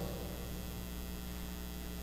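Steady low electrical hum with no other sound, even and unchanging.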